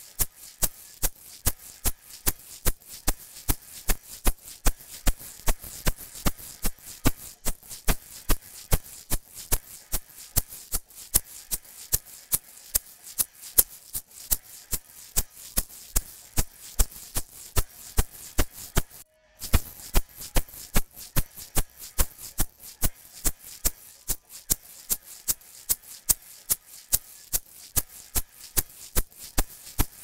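Recorded egg shaker playing a steady rhythm of about four shakes a second, run through the Crane Song Peacock vinyl-emulation plugin while its harmonic-content control is turned with the dynamic control at maximum. Playback drops out briefly about two-thirds of the way through.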